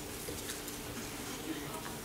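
Faint, indistinct murmur of voices in a large sanctuary, with a few light clicks and rustles about half a second, one and a half and nearly two seconds in.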